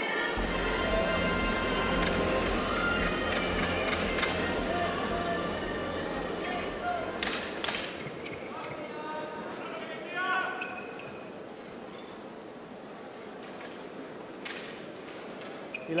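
Music playing over the arena sound system with background voices in a large sports hall, its bass line fading out about halfway through. The second half is quieter hall noise with a few sharp clicks and short rising squeaks.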